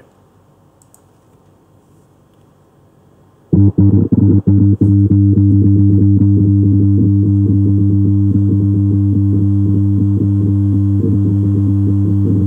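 Computer-generated test signal from a Simulink model played through the computer's audio output. It is a loud, steady electronic hum made of several low tones, standing in for the hum heard under high-voltage power lines. It starts suddenly about three and a half seconds in, stutters on and off briefly, then holds steady.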